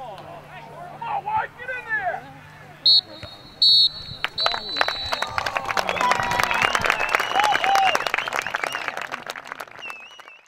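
A referee's whistle blows two short blasts and then one longer blast, the signal that the match is over. Spectators then clap and cheer.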